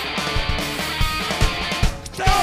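Punk rock band playing live: distorted electric guitars and bass over a driving drum beat with regular kick-drum hits.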